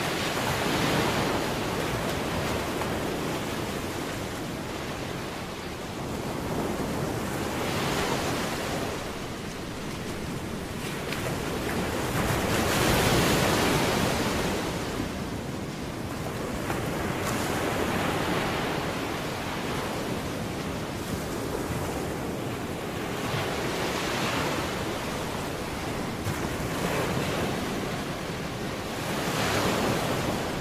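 Ocean surf: waves breaking and washing in, rising and falling every five or six seconds.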